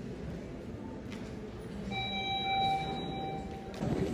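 A steady electronic tone, held for just under two seconds from about halfway through, over a low background murmur.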